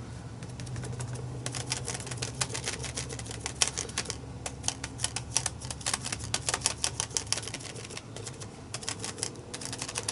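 A foam sponge dabbed rapidly against a plastic stencil on a paper journal page, making quick runs of light tapping clicks. The clicking pauses briefly about four seconds in and again near eight seconds.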